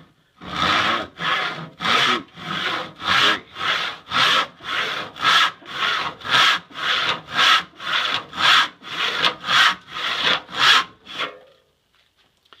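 Dull hand saw cutting across a wooden 2x4: ten back-and-forth strokes, each push and pull a separate rasping burst, about two a second. The saw is not sharp and has not yet been sharpened. The sawing stops just before the end.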